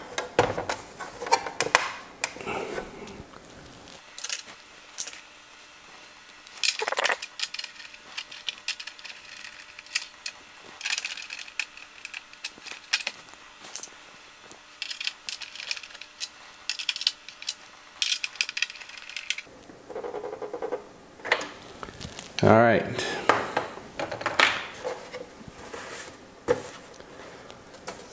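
Small hand tools and metal screws, nuts and bolts clicking and clattering against a hard plastic RC truck body and the bench as the body hardware is tightened and the body handled. The clicks come irregularly, in bunches, with quieter gaps between them.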